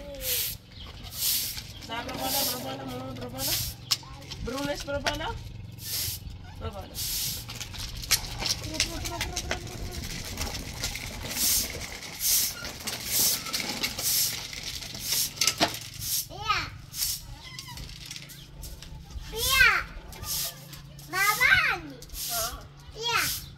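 Handmade straw broom sweeping a concrete floor, one swish about every second. A young child's voice calls and squeals in between, most of all in the last few seconds.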